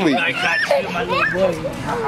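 A toddler's excited voice, high and rising and falling without words, mixed with other voices.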